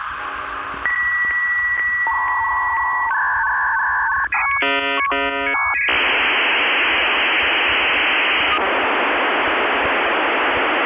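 Dial-up modem handshake: a steady high answer tone with faint regular clicks, then shifting single tones and about a second of rapidly switching chords of tones. From about six seconds in it gives way to a steady loud hiss of data training.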